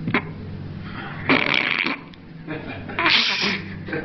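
A person blowing noisy bursts into cupped hands held at the mouth: a short click near the start, then two bursts of about half a second each, the second about a second and a half after the first.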